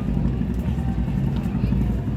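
Busy street ambience: a steady low rumble with faint voices of people in the crowd.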